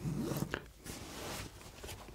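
Fabric rustling as a wide-brimmed sun hat is pulled off the head and handled, with a short click about half a second in.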